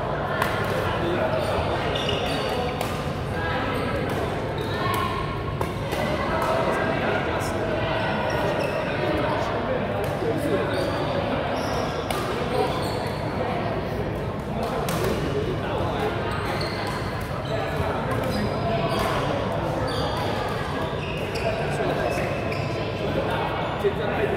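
Badminton rackets striking shuttlecocks in sharp, irregular smacks from several courts at once, echoing in a large sports hall, over the steady chatter of many players' voices.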